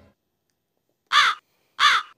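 Crow cawing twice, two short harsh calls about two-thirds of a second apart, dropped in as a comedy sound effect over an awkward silence.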